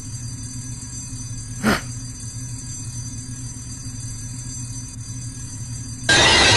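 Steady low background hum and hiss, broken once, nearly two seconds in, by a short voiced "uh".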